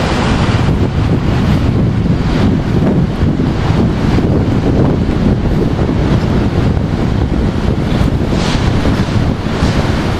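Steady wind noise rumbling on a handheld camera's microphone, with street traffic noise underneath.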